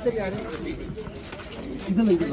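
A man speaking in short phrases, with quieter voices around him between them.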